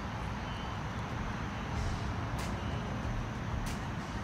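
Steady low outdoor rumble, with two short sharp clicks about two and a half and three and a half seconds in.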